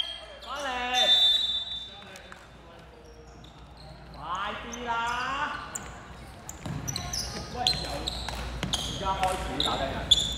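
Basketball game sounds in a sports hall: voices call out twice in the first half. From about seven seconds in come short sneaker squeaks and ball bounces on the court floor.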